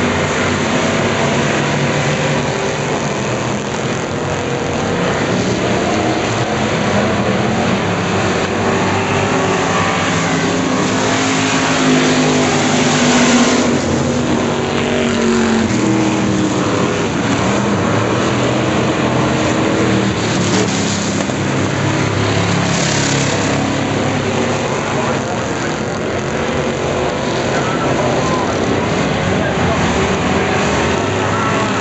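Several dirt-track stock cars racing laps together, their engines running hard and rising and falling in pitch as they work through the turns. The sound is loudest a little under halfway through.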